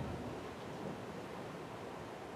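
Steady background hiss of a quiet room picked up through the microphone, with one soft low thump at the very start.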